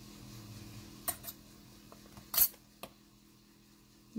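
A few light clicks and one short, louder scrape of a metal clay blade against the work surface as it slices the end off a polymer clay cane, over a faint steady hum.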